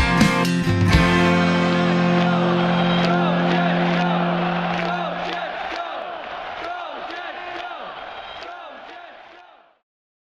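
The ending of a country-rock song: a last drum hit, then a guitar-and-bass chord held for about five seconds. A cheering, whooping crowd is mixed in and fades away to silence near the end.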